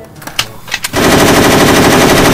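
A rifle fires a long burst of rapid automatic fire into the air, starting about halfway through, after a couple of short clicks.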